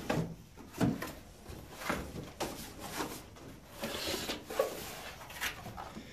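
Cardboard packaging being handled: the carton's flaps and inserts shifted and a small cardboard accessory box taken out and opened. About seven irregular knocks and scrapes, with a stretch of rustling about four seconds in.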